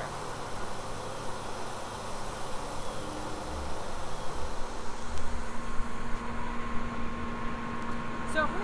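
Fire hose nozzle flowing a high stream of water, a steady hiss of spray, with a steady low hum coming in about halfway through from the fire truck's pump engine.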